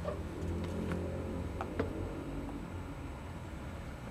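Handling sounds: a few light clicks and taps as iPod touches are moved and set down, over a steady low background hum.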